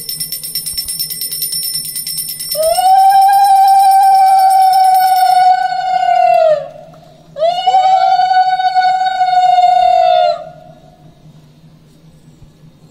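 A puja hand bell ringing rapidly. About two and a half seconds in, a conch shell is blown in a long, loud, steady note that drops in pitch as it ends, and after a short break a second, slightly shorter note. The bell stops partway through the first blast.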